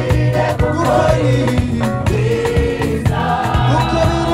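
Rwandan gospel choir singing a song together with a lead singer, over a steady beat and bass line.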